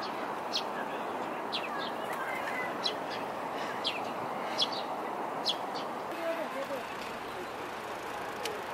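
Outdoor park ambience: a steady background murmur of distant voices and city noise, with small birds giving short high chirps about once or twice a second.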